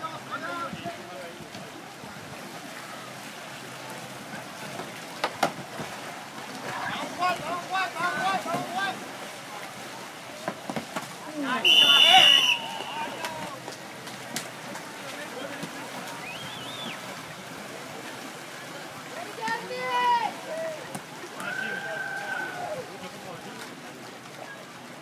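Kayak paddles splashing on open water under scattered shouting from players and onlookers. About halfway through comes one loud, steady, high whistle blast lasting about a second, the loudest sound: a referee's whistle stopping play.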